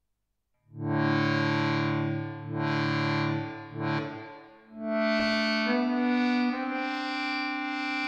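Sampled 1926 accordion, a Kontakt sample instrument, played from a keyboard: two held chords, then sustained notes that step to new pitches twice near the end.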